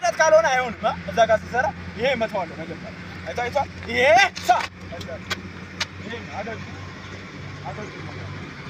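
Short wordless vocal exclamations, one rising loudly about four seconds in, followed by a few sharp smacks from about four to six seconds in, over a steady low hum of road traffic.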